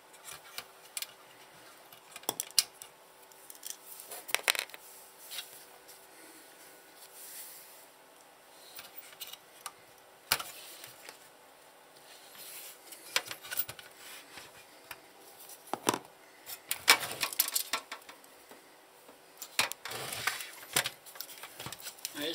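Hand screwdriver undoing small screws from a satellite receiver's sheet-metal chassis: scattered metallic clicks and scrapes, with loose screws clinking down onto a stone worktop.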